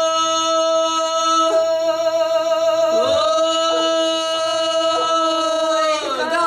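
Two women singing a Serbian folk song in the "iz vika" style, loud open-throated long-held notes. The lower voice drops out about a second and a half in and comes back with an upward swoop into its note halfway through, while the upper voice holds its note.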